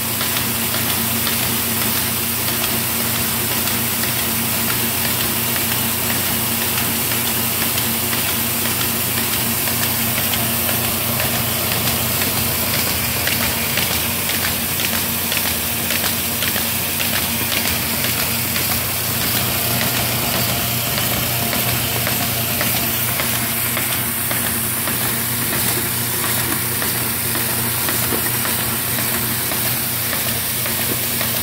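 Baum 714 Ultrafold air-feed paper folder running with its air pump on: a steady machine hum and air hiss, with faint fast ticking as sheets feed through the folding rollers.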